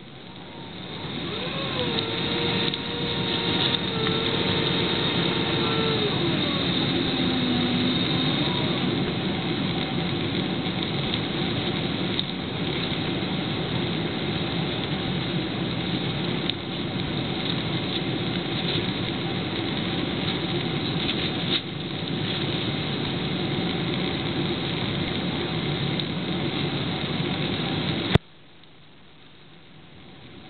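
Jet airliner cabin noise on approach with the flaps extended: a loud, steady rush of engines and airflow that builds over the first couple of seconds. A whine holds steady, then drops lower about six seconds in and fades out by about eight seconds.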